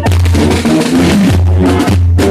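Marching band playing: a brass melody with held notes over drums.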